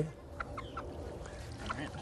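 A hen giving a few soft clucks while being bathed in a bucket of water, with faint sloshing of water.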